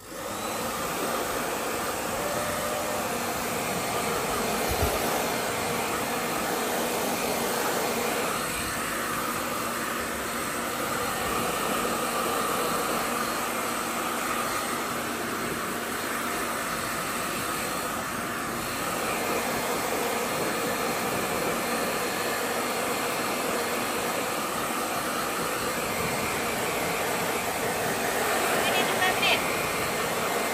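Hair dryer running, a steady blowing noise with a faint motor hum, switched on at the very start.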